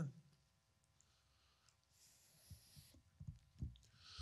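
Near silence: room tone, with a few faint low thumps in the last second and a half.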